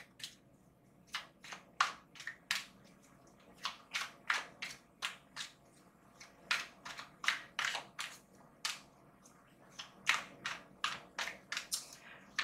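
Deck of tarot cards being shuffled by hand: a series of short, crisp card-on-card swishes, irregularly spaced at about one or two a second.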